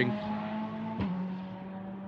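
GT3 race car engine running through a corner, a steady engine note that slowly fades, with one short click about a second in.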